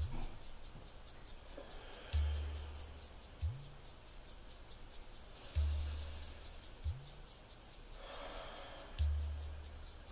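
Soft background music with a deep low note every three and a half seconds and a light, fast ticking beat, under faint slow breaths in and out.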